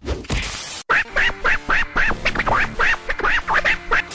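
A short whoosh, then a rapid run of about a dozen short, nasal, quack-like calls, about four a second, each rising and falling in pitch, over music: an edited-in comic sound effect.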